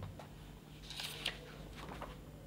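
Pages of a book being turned by hand: a brief paper rustle about a second in, with a sharp crackle, and a few faint paper clicks around it.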